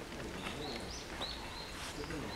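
A bird calling with a few short, high chirps over faint outdoor background noise.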